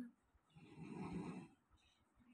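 A single soft, breathy exhale close to the microphone, swelling and fading over about a second in the middle.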